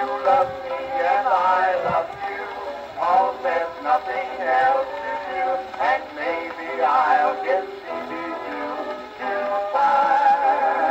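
A 1924 Cameo 78 rpm shellac record played on an acoustic phonograph: a dance-band passage with no sung words, its melody lines narrow-toned, with little bass.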